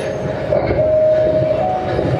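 A recorded horn-like tone held for about a second, stepping slightly up in pitch near the end, over a steady rumbling noise.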